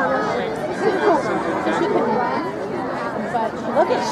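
Overlapping chatter of several people talking at once, a spectator crowd's conversation with no single clear voice.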